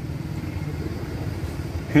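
Steady low rumble of outdoor road traffic, with no single event standing out.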